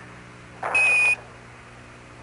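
A short burst of radio hiss, then one steady high beep lasting under half a second: a Quindar tone on the Apollo air-to-ground radio loop, the signal sent when Mission Control keys or releases its transmitter.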